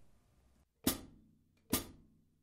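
Pair of hi-hat cymbals closed by the foot pedal, a short crisp chick of the two cymbals meeting, twice, a little under a second apart.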